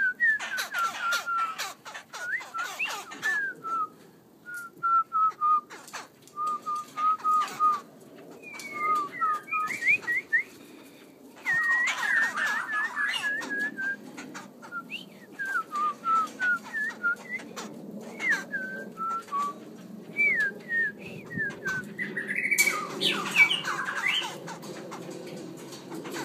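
A caged songbird sings a long run of short, clear whistled notes that slide up or down, some repeated in quick series. Bursts of rustling or scuffing noise come near the start, about halfway through and near the end.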